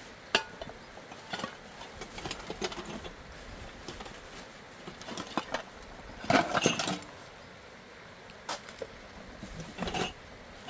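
Metal pots, cups and lids being handled: scattered clinks and knocks with some rustling, and a louder burst of clattering about six seconds in.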